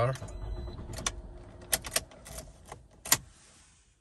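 Car key and key ring clicking and jangling at a Toyota RAV4's ignition: a few light clicks, the sharpest about three seconds in. The engine does not start, because the aftermarket key's chip is not programmed to the car.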